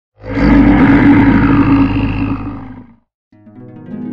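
A loud roar that starts almost at once and fades out over about three seconds. After a short gap, music begins near the end.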